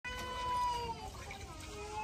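A young child crying: one long, high wail of about a second that falls at its end, followed by a fainter, lower cry.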